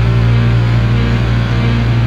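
Rock band playing an instrumental passage of a song with no vocals: a loud held low note with a wavering higher tone over it, steady in level.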